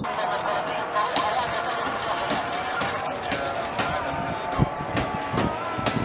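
Voices calling out in long, wavering tones, over a series of sharp bangs from the rocket barrage and interceptions in the night sky, the loudest about four and a half seconds in.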